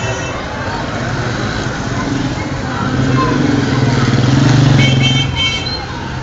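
Street noise with a motor vehicle's engine growing louder to a peak about five seconds in, then fading as it passes. Two short high horn toots sound just before it fades, over background voices.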